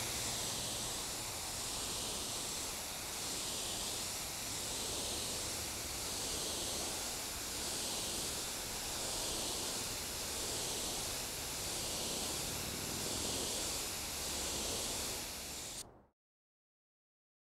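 Compressed-air gravity-feed spray gun spraying high-solids automotive primer in a continuous hiss that swells and fades gently about every second and a half. It cuts off suddenly near the end.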